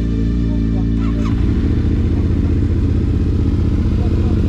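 Yamaha Ténéré 700's 689 cc parallel-twin engine idling with an even pulsing beat, heard plainly from about a second and a half in. Music plays over the first part.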